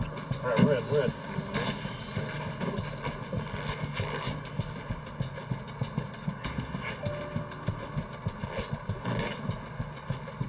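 A saw cutting into a roof, with rapid, uneven strokes over a steady low drone.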